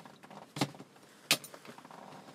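Two sharp clacks about three-quarters of a second apart, the second louder, over faint rustling.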